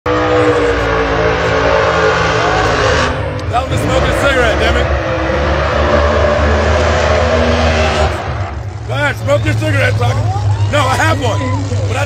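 No-prep drag race cars at full throttle as a pair launches and runs down the strip. The loud engine sound thins after about three seconds and drops away about eight seconds in, leaving spectators' voices close by.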